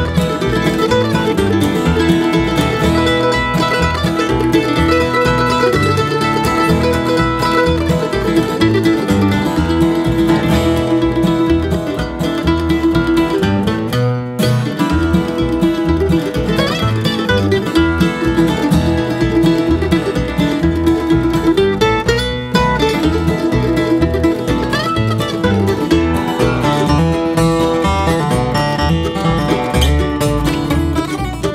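Bluegrass trio playing an instrumental tune on acoustic guitar, mandolin and upright bass, with the picked melody over a steady bass. Twice the playing drops out for a split second, about halfway through and again a little later.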